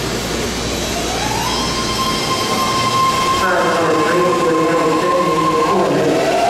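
BART train starting to pull out of an underground station: the propulsion whine rises in pitch about a second in and then holds steady, over rail rumble that fades out.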